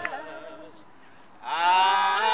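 A singing voice comes in about one and a half seconds in, gliding up onto a long held note that wavers slightly.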